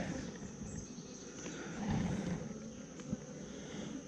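Faint, steady buzzing hum of honeybees on the frames of an opened nuc hive, with a single light click about three seconds in.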